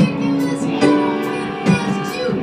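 Live jazz combo playing an instrumental passage: long held melody notes over guitar, with a drum or cymbal accent on a steady beat a little over once a second.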